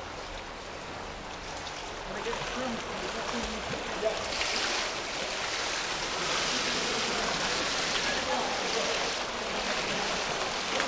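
Swimmer's arms and kick splashing through pool water, a steady splashing that grows louder from about four seconds in as the swimmer gets under way.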